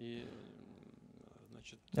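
A pause in speech: a man's voice trails off in a quiet, drawn-out hum that fades within about half a second, leaving faint room tone.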